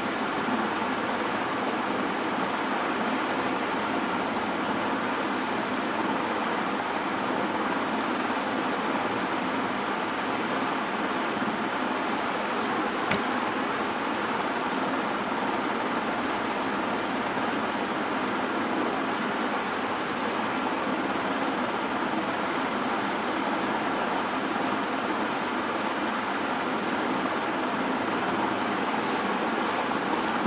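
Steady rushing background noise at an even level throughout, with a few faint ticks.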